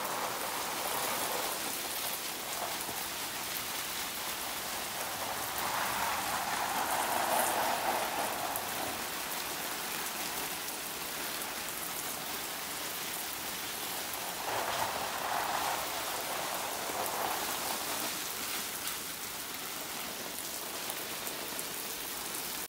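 Spray from a garden hose pattering onto dense citrus foliage and pots, a steady rain-like hiss. It grows louder for a few seconds twice, once near the first third and again past the middle.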